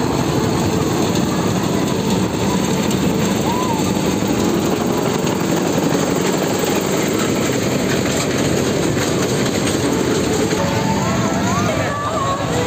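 A small fairground toy train running along its circular rail track, a steady loud rumbling noise. Music and voices come in near the end.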